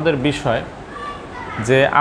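A man speaking Bengali, with a short pause in the middle.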